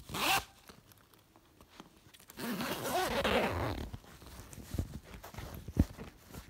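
HITOP backpack zipper being pulled by hand: one short quick zip right at the start, then a longer zip lasting about a second and a half. A few light handling clicks follow near the end.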